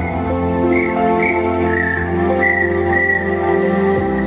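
Instrumental music: a breathy, whistle-like pan flute melody of short, slightly bending high notes over sustained keyboard chords and a steady bass.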